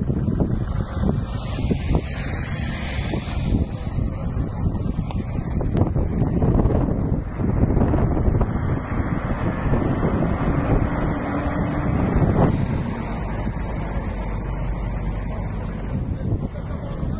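Wind buffeting the microphone, a loud, uneven rumble, with road vehicle noise mixed in. A faint steady hum comes in briefly just before the rumble eases slightly in the last few seconds.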